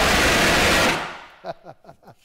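Hand-held fire extinguisher discharging: a loud, steady hiss that cuts off about a second in and fades away.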